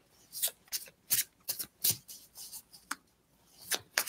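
A deck of tarot cards being shuffled by hand: about a dozen short, soft swishes and flicks of cards sliding over one another, at an uneven pace.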